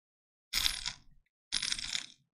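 Someone drinking from a cup close to the microphone: two swallows about a second apart.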